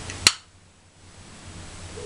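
A single sharp click about a quarter second in, after which the background hiss briefly drops away and then slowly returns.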